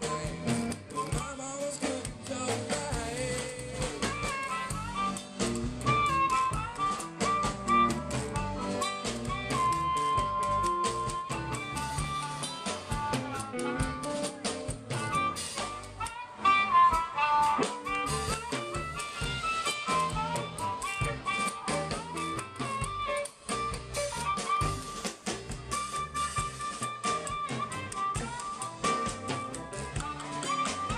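Live zydeco blues band playing an instrumental break: drum kit, bass and electric guitar keep a steady groove under an amplified blues harmonica lead with held, bending notes.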